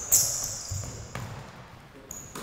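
A basketball being dribbled on a hardwood gym floor: a few bounces about half a second apart, the first the loudest.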